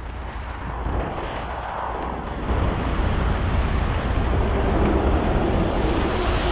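Wind buffeting the action camera's microphone: a steady rumbling hiss, heaviest in the low end, that grows louder about halfway through.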